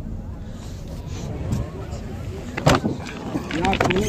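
Voices speaking in the background over a steady low rumble, with one sharp knock about two and a half seconds in and a voice speaking briefly near the end.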